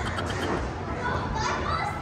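Children's voices and playful calls echoing in a large indoor play hall, over a steady low hum.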